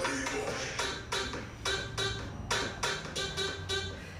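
Background music with a steady beat, about three to four beats a second.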